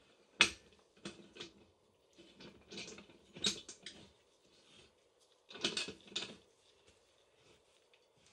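Metal swing clamps and wing nuts on a pressure pot's lid being swung into place and screwed down by hand: scattered clicks and clinks in a few short clusters.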